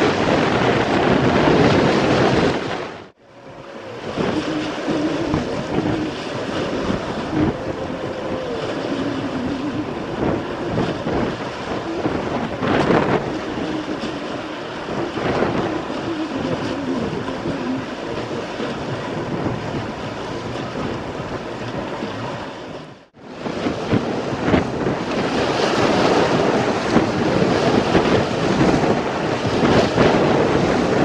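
Strong wind buffeting the microphone over choppy water, with waves slapping and washing against a concrete embankment. The sound drops out briefly twice, about three seconds in and again near the end.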